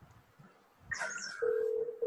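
Near silence, then a brief hiss just before halfway and a steady, single mid-pitched electronic tone that starts about two-thirds of the way in and holds.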